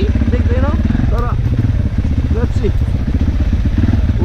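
Dirt bike engine running with a steady, low pulsing rumble as it rides a muddy trail, with a voice heard briefly over it in the first second or so and again past the middle.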